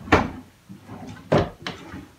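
Wooden cupboard doors knocking open and shut as someone rummages: one sharp knock just after the start, then two more close together past the middle.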